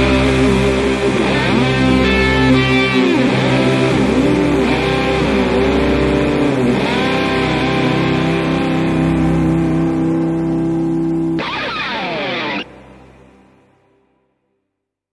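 Closing bars of a rock song: a sustained band chord with electric guitar and a lead line bending up and down. Near the end the pitch sweeps downward, then the music cuts off suddenly and dies away to silence.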